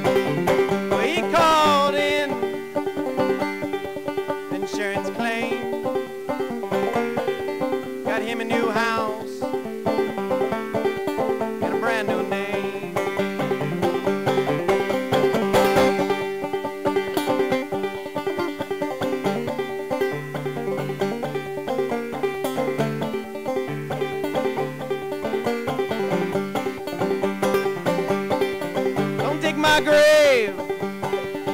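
A banjo picked in a steady instrumental break, with one held note ringing as a drone under the picking.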